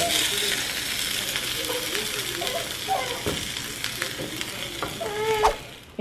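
Pupusas sizzling on a hot stovetop griddle as they are reheated: a steady sizzle that stops abruptly just before the end.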